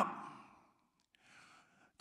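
The end of a man's shouted phrase dying away in the room's reverberation, then near silence broken by a faint breath into the microphone about a second and a half in.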